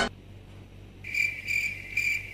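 A high chirp repeating about twice a second, starting about a second in, after a brief quiet where music has just cut off.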